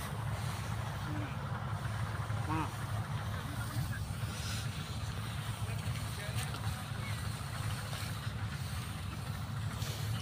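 A steady low engine hum, like a motor idling, with no change in pitch.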